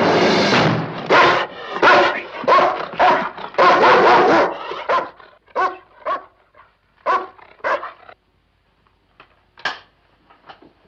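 A dog barking repeatedly: a fast run of loud barks over the first few seconds, then scattered barks that come further apart and get fainter.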